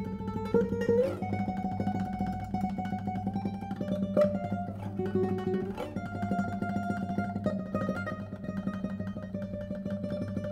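Solo classical guitar, a 2022 Thomas Dauge, played fingerstyle: a held low bass under a slow melody, with a rising slide about a second in and a few sharp accented strokes.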